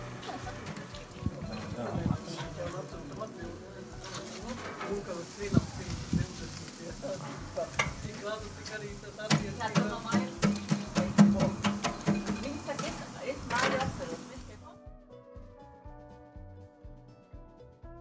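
Meat in wire grill baskets sizzling over charcoal, with frequent sharp crackles and pops and faint voices in the background. A little before the end the crackling falls away, leaving faint music.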